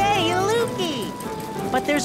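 A cartoon character's short wordless vocal sounds over background music with held notes.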